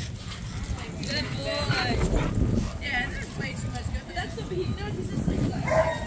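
Dogs barking and yipping a few times, with people's voices in the background.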